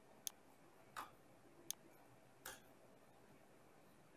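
Near silence broken by four isolated sharp clicks of computer keyboard keys, a little under a second apart.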